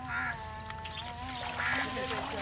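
A bird's harsh squawks, twice, once at the start and again about a second and a half in, over steady wavering musical tones.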